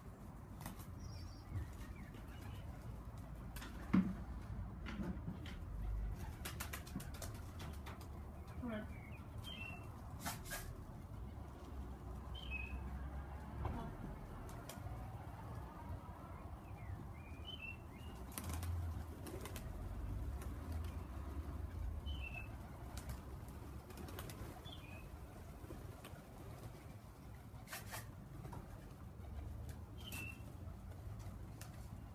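Tippler pigeons' wings flapping and clapping repeatedly as the birds take off from and land around the loft, with a sharp knock about four seconds in. Short high chirps come every couple of seconds throughout.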